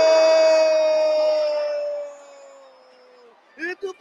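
A futsal narrator's drawn-out "Goooool" shout calling a goal, held on one steady note. It fades out over about a second and stops just after three seconds in. Near the end he starts talking again.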